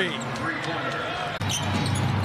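Basketball arena game sound: crowd noise with some voices and scattered sharp court sounds during play. It breaks off abruptly about a second and a half in and goes on with a steadier low crowd rumble.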